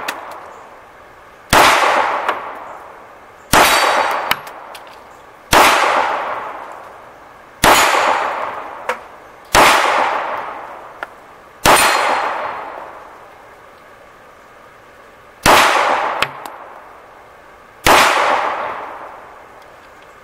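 Colt Competition 1911 pistol in 9mm firing eight single shots, roughly two seconds apart with a longer pause near the end, each shot followed by a long ringing tail.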